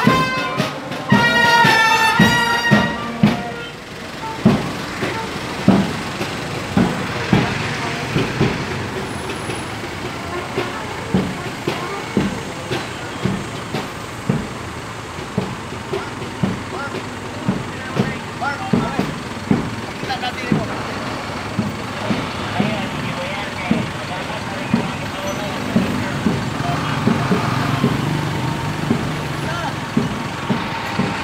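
Parade bugles sound a brief brass phrase that stops about three seconds in, followed by a steady marching drumbeat keeping time, with voices in the background. Near the end a vehicle engine runs close by.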